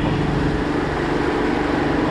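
A boat's motor running steadily while under way, with the wash of the wake behind it.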